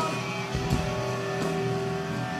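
Hardcore punk band playing live: electric guitar chords ring out, held steady, over drums, with a few hard drum hits about halfway through.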